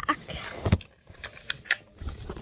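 Handling noise from a plastic computer keyboard being turned over in the hands: a few scattered clicks and one dull knock about two-thirds of a second in.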